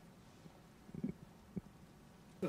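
Quiet room tone broken by a few soft, low knocks: a small cluster about halfway through and a single one shortly after.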